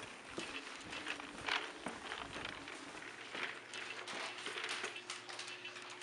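Footsteps of canvas sneakers on a hardwood floor, an uneven run of soft knocks and scuffs, with a faint steady hum coming in about four seconds in.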